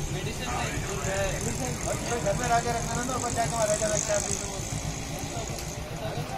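Motorcycle engine idling with a steady low pulse, under men talking.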